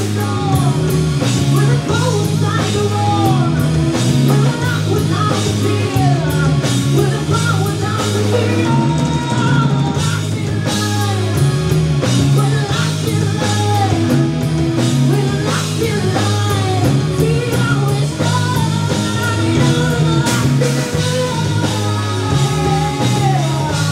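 Live rock band playing loud: electric guitar, bass guitar and drum kit, with a lead singer.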